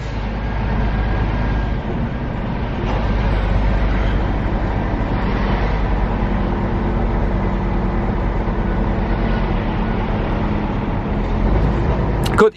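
Lorry engine running with steady rumble and road noise, heard from inside the truck's cab as it drives through a yard.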